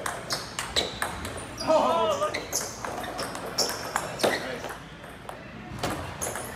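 Table tennis rally: the ball clicks off the paddles and the table several times a second in a quick, uneven rhythm. A brief voice-like cry rises and falls about two seconds in, the loudest moment.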